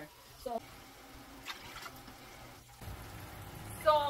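Faint running water, with a low steady hum joining about three seconds in.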